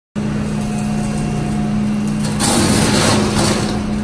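CM H-50 dual-shaft shredder (50 horsepower) running with a steady low hum that starts abruptly. About two and a half seconds in, the sound grows louder and noisier as the sandpaper roll is brought to the cutters.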